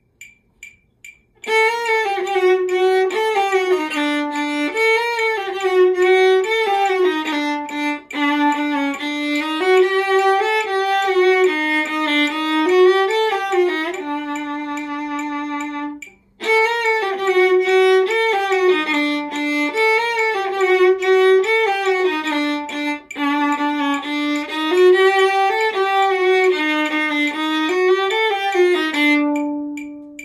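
Solo viola bowed in a melodic passage that starts about a second and a half in. It pauses briefly about halfway through and ends on a held note that fades out near the end.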